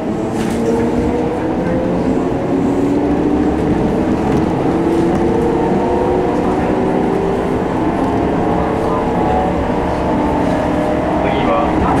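Kintetsu 6413 series electric train accelerating away from a station, its traction motors whining in several tones that rise slowly in pitch over the rumble of the running gear.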